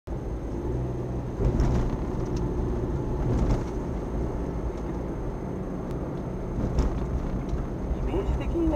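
Car driving along a road, heard from a dashcam inside the cabin: a steady low rumble of engine and tyre noise, with a few brief knocks or rattles.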